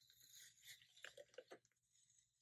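Faint paper rustling and a few soft ticks, mostly from about a second in, as a paper sticker is peeled back up off a planner page.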